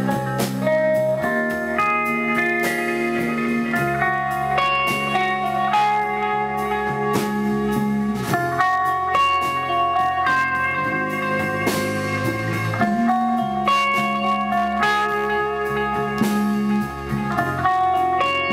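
Band music with guitar playing long held notes that step from pitch to pitch, over bass and drums.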